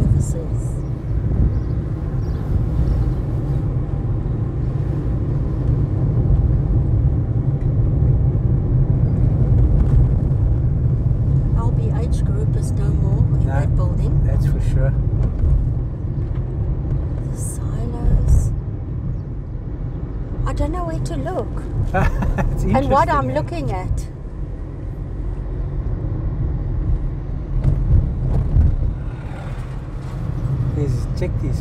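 Car driving on city streets, heard from inside the cabin: a steady low rumble of road and engine noise, with faint voices briefly heard about two-thirds of the way through.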